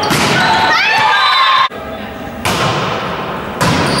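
Volleyball being struck during play in a sports hall, heard as sharp thuds, with players' voices calling out. The sound cuts off abruptly a little under two seconds in and resumes at an edit.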